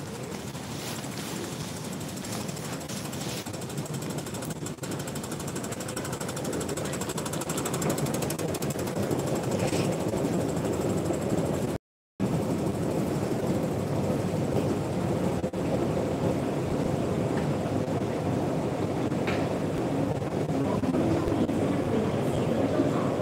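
Steady rattling rumble of a metro station escalator and the station around it, growing louder about a third of the way in as the long down escalator is ridden. The sound cuts out completely for a split second near the middle.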